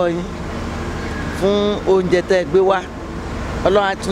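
A woman speaking in short phrases, over a steady low background hum.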